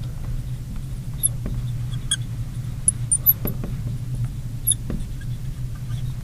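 Marker writing on a glass lightboard: a few short, high squeaks and light ticks as the tip drags across the glass, over a steady low hum.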